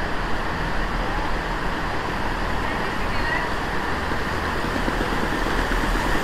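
Steady rumble and low hum of a Chiltern Railways Class 165 diesel multiple unit standing at the platform with its engines running, under a wash of station platform noise.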